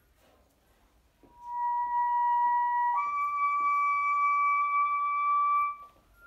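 Solo bass clarinet playing high in its range: after a short pause, one long held note comes in about a second in, then moves up to a slightly higher note held for about three seconds, which stops just before the end.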